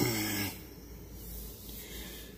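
A man's short, drawn-out voiced hum or "uhh" in the first half second, then only faint steady background noise.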